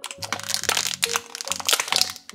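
Clear plastic blister packaging crinkling and crackling in the hands as small plastic toy figures are worked out of it, over soft background music.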